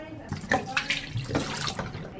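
Mouthwash pouring from a large bottle into a bathroom sink, splashing unevenly in the basin.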